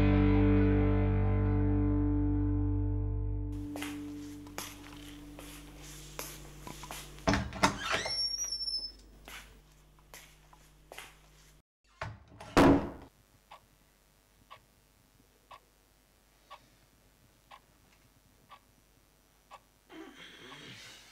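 Distorted electric guitar chord ringing out and fading over the first few seconds. Then a few scattered knocks and one loud thump about halfway through, followed by a faint clock ticking about once a second.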